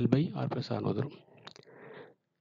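A voice speaking for about a second, then one or two sharp clicks about one and a half seconds in.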